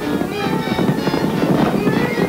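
Early sound-cartoon soundtrack: music with a rapid, clattering hoofbeat effect for a stampeding herd, thickening about half a second in.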